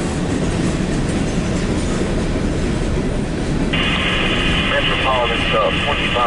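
Freight cars of a CSX mixed freight train, open hoppers and then tank cars, rolling past with a steady rumble of wheels on rail. About two-thirds of the way through, a radio scanner cuts in with a thin, band-limited voice transmission over the train noise.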